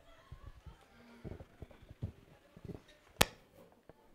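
Quiet room with faint low bumps and one sharp click about three seconds in, the loudest sound.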